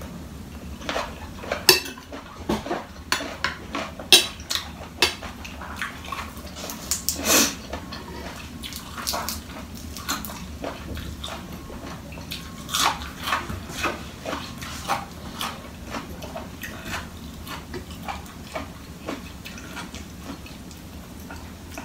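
A spoon and fork clinking and scraping against a plate of food while eating, in irregular short clicks with a few sharper ones about two and four seconds in.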